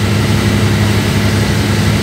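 A motor boat's engine running steadily under way, giving a low, even drone.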